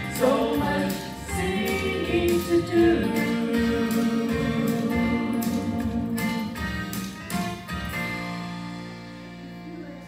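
Three women singing a gospel song in harmony over instrumental accompaniment, holding long notes; the sound fades away near the end as the song finishes.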